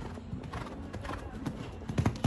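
Hoofbeats of a show-jumping horse cantering on sand arena footing: a run of dull low thuds, loudest near the end as the horse passes close.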